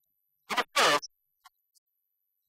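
Two quick scratchy rubbing noises, close together, typical of a hand or clothing brushing against a clip-on microphone.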